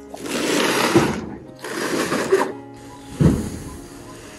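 A large cardboard refrigerator carton scraping as it is slid and tipped off a truck bed: two scrapes of about a second each, then a heavy thump about three seconds in. Background music plays underneath.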